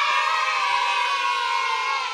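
A group of children cheering one long held "yay", a cheering sound effect that stays steady.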